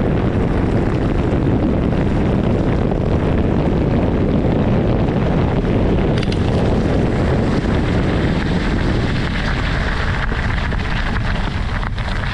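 Wind rushing over the microphone of a mountain bike's on-board camera, with tyres rumbling on a gravel track at speed. From about nine seconds in, the low rumble eases and a higher hiss comes up.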